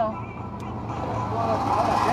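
Motor-vehicle noise that swells over the second half, over a steady low engine hum, with faint voices in the background.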